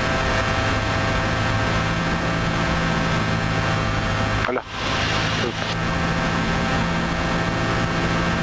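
Cessna 172P's four-cylinder Lycoming engine and propeller droning steadily, heard inside the cockpit with the rush of air over the cabin, as the plane flies its approach. The sound dips briefly about halfway through.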